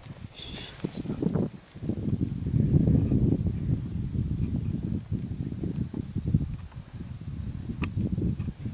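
Wind gusting over the camera's microphone: an uneven low rumble that swells about two seconds in and keeps buffeting.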